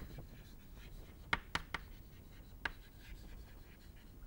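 Chalk writing on a chalkboard: faint scratching of the stick across the board, with a few sharp taps as letters are struck. There are three close together about a second and a half in, and one more past two and a half seconds.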